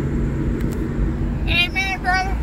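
Steady low rumble of a car's engine and tyres on the road, heard from inside the cabin while driving. A brief high-pitched voice comes in near the end.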